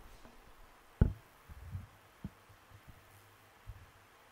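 One dull thud about a second in, much the loudest sound, then a few fainter low knocks over a steady low hum: on-field sounds of cricket play picked up by the pitch microphones.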